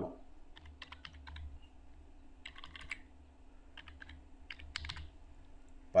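Typing on a computer keyboard: three short runs of key clicks, over a faint steady hum.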